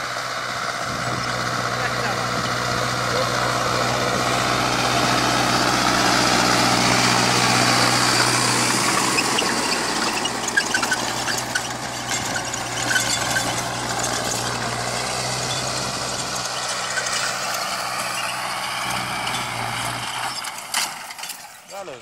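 Mahindra 605 tractor's diesel engine running under load while its rotavator churns through the soil, a steady hum with a wide grinding rush. It grows louder to a peak around the middle, eases off, and the hum drops away shortly before the end.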